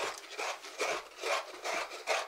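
A coconut half being grated on a toothed coconut grater. About five rasping strokes come at roughly two a second as the white flesh is scraped out of the shell.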